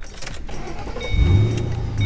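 A 2006 Ford Mustang GT's 4.6-litre V8 being started: it catches about a second in and then runs at idle.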